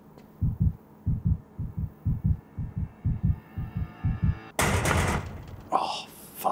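Heartbeat sound effect: paired low thumps, lub-dub, speeding up from about one beat a second to about two, over a faint hum with a slowly rising tone. About four and a half seconds in, a loud burst of noise cuts across it and fades.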